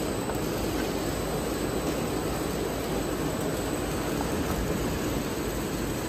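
Small HDPE double-wall corrugated pipe extrusion line running, a steady, even machine noise from its corrugator and motors.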